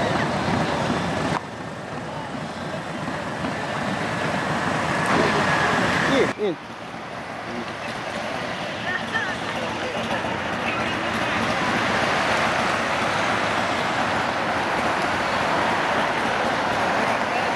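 Street traffic noise with motorcycle engines running and indistinct voices. The sound changes abruptly about a second in and again about six seconds in.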